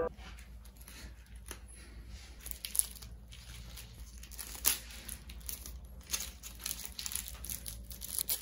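Thin plastic wrapper of a convenience-store onigiri crinkling and tearing as its red pull-tab strip is pulled, in irregular crackles with a couple of sharper snaps about three and five seconds in.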